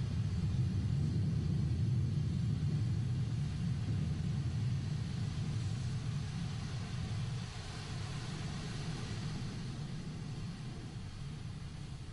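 Atlas V rocket's RD-180 first-stage engine in powered ascent, a deep low rumble heard from the ground that slowly fades as the rocket climbs away.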